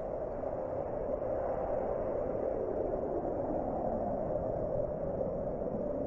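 Steady, unbroken roar of a large explosion's rumble, with no separate blasts.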